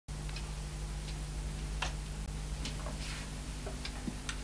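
Steady low electrical hum and hiss from an old television recording, with faint irregular clicks scattered through it.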